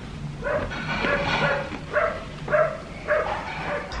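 A dog barking repeatedly, about six short yaps spread over a few seconds.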